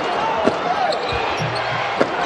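Steady arena crowd noise, with a basketball dribbled on the hardwood court, a few bounces in the first second or so.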